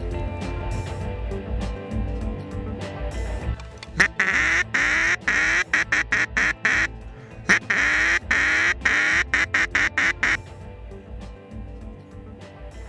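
Duck call blown in rapid runs of loud quacks, each note falling slightly in pitch, beginning about four seconds in and stopping about ten seconds in, over background music.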